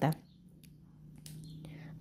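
A pause in a woman's read-aloud narration. Her last word trails off at the start, then a soft breath is taken about a second and a half in, over a faint steady low hum, before she speaks again.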